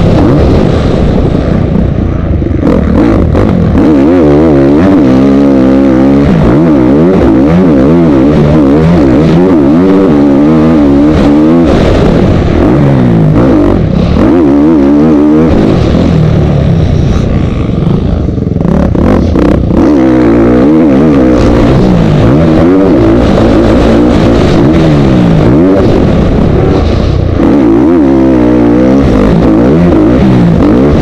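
Motocross bike engine heard close from an onboard camera, loud, its pitch rising and falling over and over as the throttle is opened and closed around the track, with occasional knocks from the rough ground.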